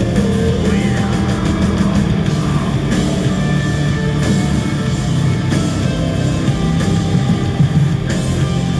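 A live rock band playing loud through an arena PA, heard from the audience: guitars, bass and drums in one steady, dense wall of sound.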